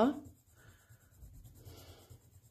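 Soft 12B graphite pencil shading on sketchbook paper under firm pressure: a faint scratchy rasp of the lead on the paper, in two short stretches.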